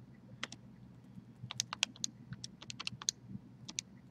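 Calculator buttons being pressed to enter a sum: a string of about fifteen light, irregular clicks, most of them bunched between one and four seconds in.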